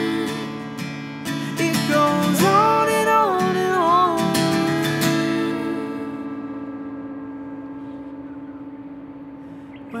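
Acoustic guitar strummed under a wordless sung line, then one chord left ringing and slowly fading from about five seconds in.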